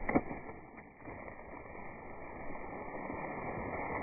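Slowed-down, muffled audio of a buried trap being levered up out of the dirt with a bar, heard as a low, dull rushing noise with a brief knock right at the start, growing slowly louder.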